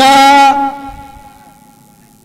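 A man's loud, drawn-out call over the loudspeaker: one held note that slides up at its start, then fades away over about a second.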